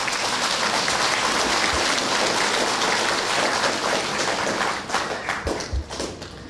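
Audience applauding steadily, the clapping thinning and dying away near the end.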